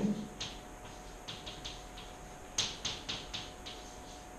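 Chalk writing on a blackboard: a series of short, sharp taps and scratches, strongest in a quick run of strokes a little past halfway.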